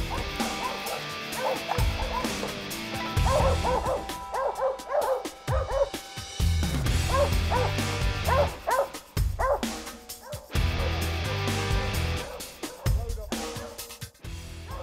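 Mountain Cur dogs barking repeatedly in bursts at a tree, the treeing bark that signals a squirrel treed, over background music with a steady bass.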